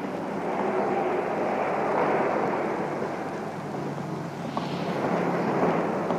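Street traffic noise: a steady rush of passing vehicles that swells a couple of seconds in and then eases off.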